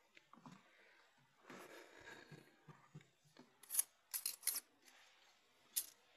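Faint hand-handling sounds at the clamping jaws of a folding endurance tester: a soft rustle about a second and a half in, then a quick run of light clicks past the middle and one more near the end.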